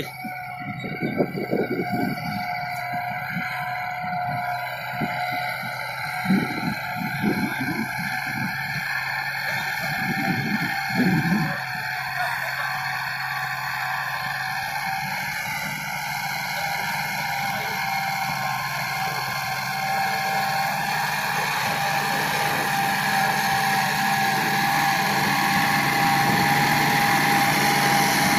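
Farmtrac tractor's diesel engine running steadily under load as it pulls two disc harrows, growing louder toward the end as it comes closer. There are a few short lower sounds in the first dozen seconds.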